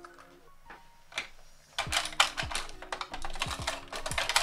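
Rummaging through small make-up items: a dense run of irregular clicks and rattles from about two seconds in, over faint background music.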